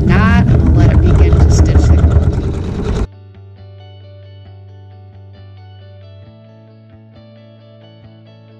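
Computerized embroidery machine stitching, a rapid run of needle strokes, for about three seconds. It then cuts off suddenly and quiet background guitar music takes over.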